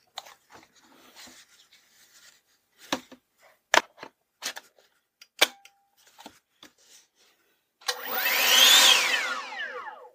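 Cordless AOETREE leaf blower's brushless motor run briefly near the end: a whine with rushing air that rises to a peak and winds down again over about two seconds. Before it, a few sharp clicks as the battery is fitted and the blower handled.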